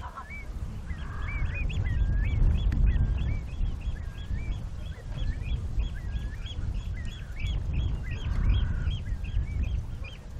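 A flock of waterbirds calling continually, many short overlapping calls a second, over a steady low rumble.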